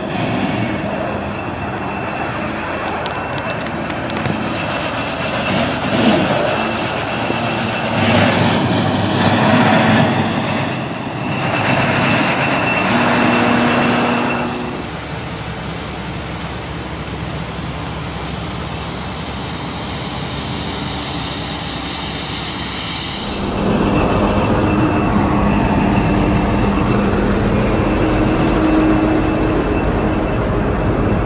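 Diesel engines of heavy snow-clearing machinery, road graders and a plough truck, running under a constant noisy rush. The sound changes abruptly twice, about halfway through and again about three quarters of the way through.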